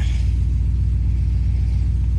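A steady low rumble with a fine, even pulse, holding constant throughout.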